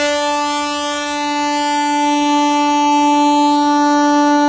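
Diesel multiple unit's horn sounding one long, steady blast at a single pitch.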